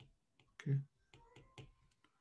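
A few faint, sharp clicks of a stylus tapping a tablet screen while handwriting words, spread across about half a second.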